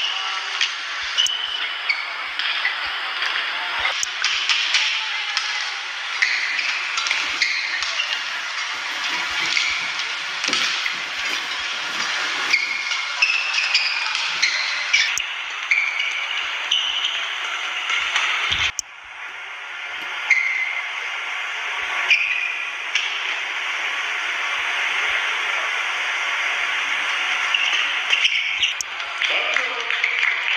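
Badminton rally on an indoor court: shoes squeaking sharply and repeatedly on the court mat, with racket strings striking the shuttlecock, over a steady arena crowd hubbub.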